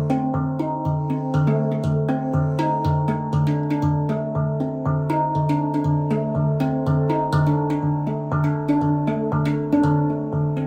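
A 9-note stainless steel handpan in the D Hijaz scale, played with the hands. A low bass note is struck steadily about twice a second while quicker, higher ringing notes weave a melody over it.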